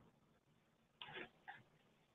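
Near silence: room tone, with two faint, short sounds a little after a second in.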